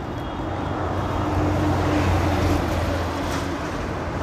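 Road traffic with a vehicle passing close by: a low engine hum swells to a peak about halfway through and fades, over steady traffic noise.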